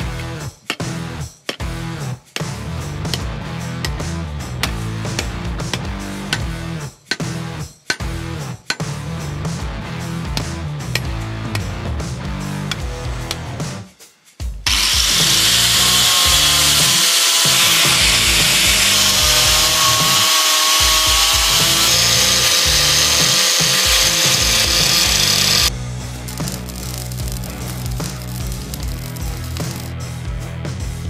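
Background music with a steady beat; about halfway through, an angle grinder works a steel bar for about eleven seconds, a loud high hiss with a steady whine, then stops abruptly.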